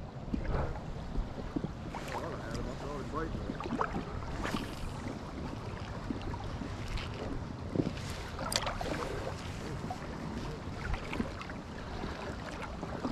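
Water sloshing and splashing around the legs of someone wading through a rocky river, with wind buffeting the microphone as a steady low rumble. A few brief sharper splashes stand out, the clearest about four and a half and eight and a half seconds in.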